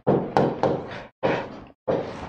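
White chalk writing numbers on a blackboard: sharp taps as the chalk strikes the board, each followed by short scratching strokes, in three brief bursts with small gaps between.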